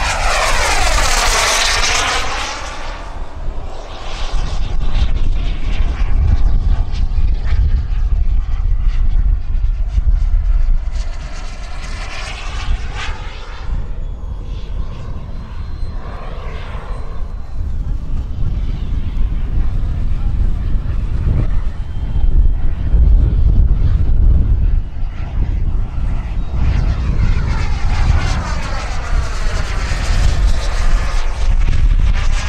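Turbine whine of an RC model Yak-130 jet making fly-by passes. The pitch falls as it passes just after the start and again about twelve seconds in, and rises as it approaches near the end. A low rumble of gusty wind on the microphone runs underneath.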